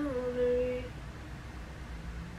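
A woman's voice holding one sung or hummed note for just under a second, unaccompanied. It dips slightly in pitch at its start, then leaves only low room hum.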